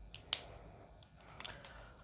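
Whiteboard marker and its cap handled: one sharp click about a third of a second in, then a few faint clicks around a second and a half in.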